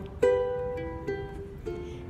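Acoustic ukulele playing alone: a chord struck about a quarter second in, then a few single plucked notes that ring and fade.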